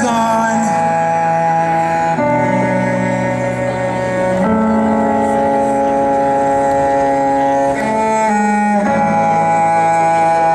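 Live rock band playing an instrumental passage of long held chords over low bass notes, the chord changing every two to three seconds.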